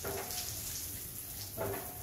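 Water spraying steadily from a Eurolife shower set's hand shower, a constant hiss. The head is set to its outer-ring spray pattern, which runs strongly.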